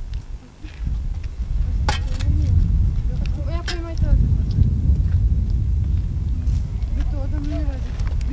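People's voices over a steady low rumble, with a couple of sharp clicks.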